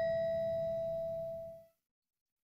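The ringing tail of a single chime, one clear bell-like tone with fainter higher ringing above it, fading out about a second and a half in. It is the cue between questions of a listening test, coming right before the next question number is read.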